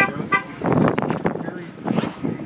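A car horn toots twice, briefly, about a third of a second apart, amid the voices of a crowd on foot.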